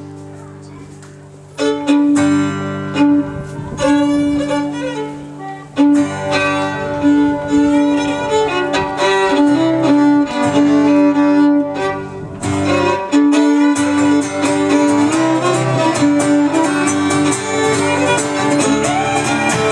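Live country tune played on fiddle, with strummed acoustic guitar and keyboard underneath; the fiddle carries the melody. It gets markedly louder about one and a half seconds in, as the band plays at full strength.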